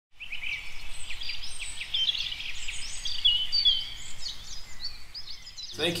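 Birds chirping and twittering, with many quick, high calls overlapping.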